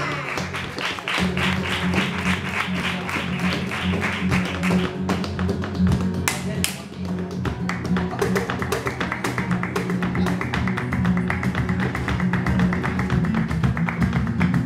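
Flamenco alegría: the dancer's heeled shoes strike the stage in rhythmic footwork, with palmas hand-clapping over flamenco guitar. The strikes become a fast, dense run from about eight seconds in.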